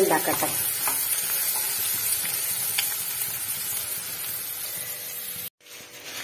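Sliced onions sizzling in hot oil in a frying pan while they are stirred with a wooden spatula, with a few faint scrapes. The sound cuts off suddenly near the end.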